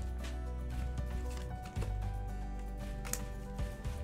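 Background music with a steady bass line, with a few faint clicks of Pokémon trading cards being handled and flipped.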